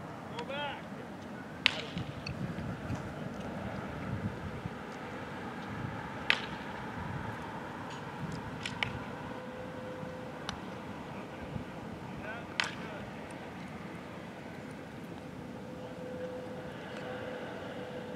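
Baseball bat hitting tossed balls in a batting cage: three sharp cracks, about a second and a half in, about six seconds in and loudest near twelve and a half seconds, with a few fainter knocks in between.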